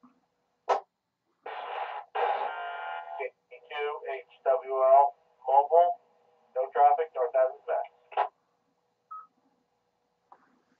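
Amateur radio receiver's speaker during a net: a click, about two seconds of steady tones, then a few seconds of a short voice transmission with a steady hum under it.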